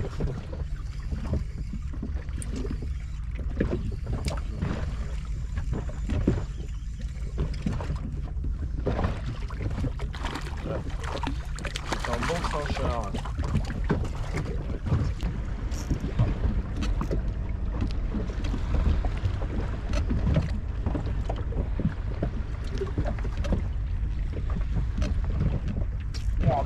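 Steady low wind rumble on the microphone and water lapping against the hull of a small inflatable boat, with scattered small knocks and clicks of fishing tackle; a few faint words come in around the middle.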